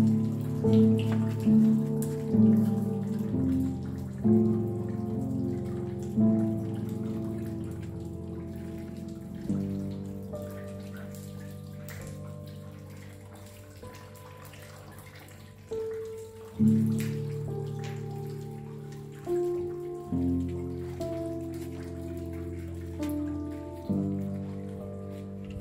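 Slow, calm piano playing, with single notes and chords struck and left to fade, over a steady sound of rain. Notes come about once a second at first, then a chord is held and fades through the middle before new notes begin again.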